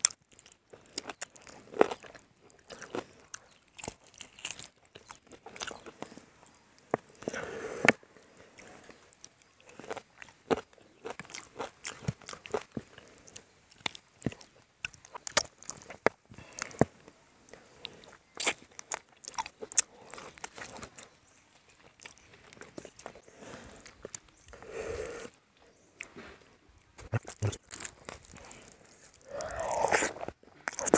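Close-up eating sounds: a man biting and chewing a chicken leg and mouthfuls of rice eaten by hand, a steady run of irregular sharp crunches, clicks and smacks.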